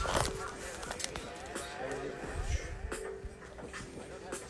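Electronic beat played live on a pad sampler: evenly spaced drum hits and deep bass notes over a held synth tone, with voice-like sounds mixed in.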